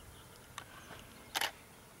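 Quiet outdoor background broken once, about a second and a half in, by a single short, sharp click.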